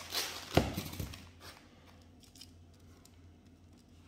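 Packaging of a giant peanut butter cup rustling as it is opened by hand, with a sharp knock about half a second in. Quieter handling follows.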